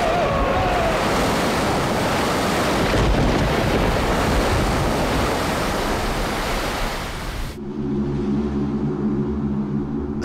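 A loud, steady rushing noise with no clear pitch. About seven and a half seconds in it cuts off suddenly and gives way to a low held drone of a few sustained notes.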